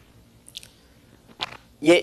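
A pause in a man's speech filled with small mouth noises: a faint breath about half a second in and a short lip smack or intake of breath about a second and a half in, after which he starts speaking again near the end.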